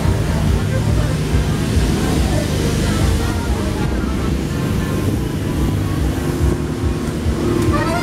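Street busker's piano accordion playing, half buried under a steady low rumble and street noise, then coming through clearly near the end.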